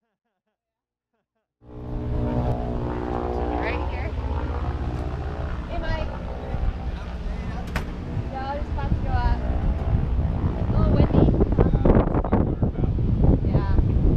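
Silent for the first second and a half, then a small helicopter's engine and rotor running steadily nearby, growing louder toward the end as wind buffets the microphone.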